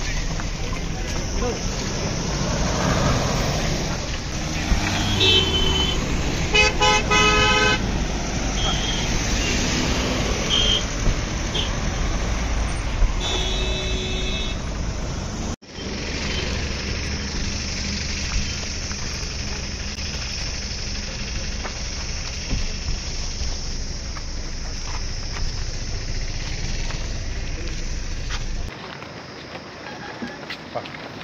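Car horns honking among a crowd's voices and vehicle noise: a few short toots and one longer blast of about a second in the first half. After a sudden cut midway, a steady low rumble with scattered voices.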